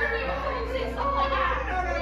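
Several people's voices at once, overlapping in continuous chatter and calls.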